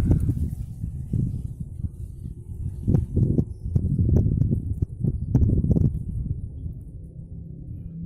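Low rumble and irregular dull thumps on the phone's microphone as it is handled and moved about, easing off towards the end.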